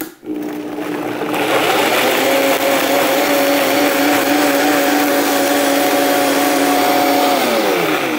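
Countertop blender pureeing tomatoes, toasted chiles, onion and garlic. The motor starts, climbs in speed over the first couple of seconds, runs steadily at high speed, then winds down near the end.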